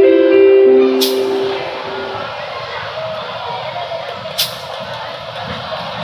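Electronic keyboard playing the last few held notes of a simple piano piece, which end about two seconds in. Then a steady crowd hubbub in a large open hall, broken by two sharp clicks.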